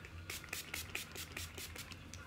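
Setting spray pumped from a pump-mist bottle: a rapid run of short spritzes, several a second, faint against a low room hum.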